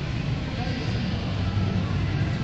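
Steady low rumble with an even hiss above it: the background noise of a large indoor mall atrium, with no distinct event.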